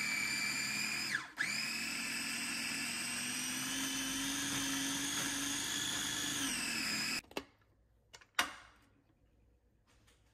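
Electric food processor motor running steadily while grinding soaked chickpeas with parsley, garlic and onion for falafel mix, with a brief break about a second in. It winds down and stops about seven seconds in, followed by two short clicks.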